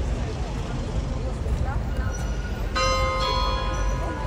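A large bell strikes about three-quarters of the way in and rings on, over background street noise and distant voices.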